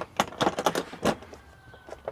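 Plastic latches of a hard carrying case for a manifold gauge set snapping open, then the lid lifting: a quick run of sharp clicks in the first second.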